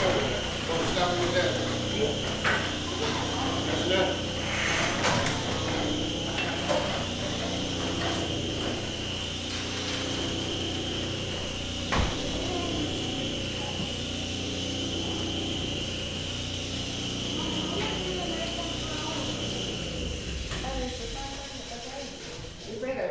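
Antique newspaper printing press running, a steady mechanical rattle and hum with a single sharp clack about halfway through. Voices murmur in the background.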